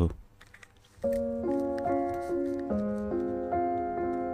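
Piano begins about a second in, playing a slow, even pattern of sustained notes, a new note about every half second: the opening of a song's playback. Before it, a brief quiet with a few faint clicks.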